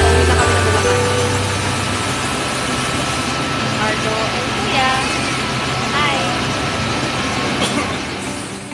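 Bus station ambience: a steady din of vehicle engines and surrounding noise, with voices speaking now and then.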